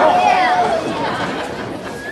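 Small crowd of spectators chattering and calling out, with one voice holding a long call through the first second.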